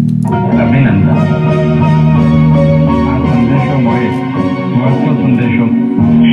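Full mix of a slow electronic-classical track playing back: a soft acoustic piano, an electric piano carrying the bass, and a spacey synth, with chopped, glitchy vocal samples over them.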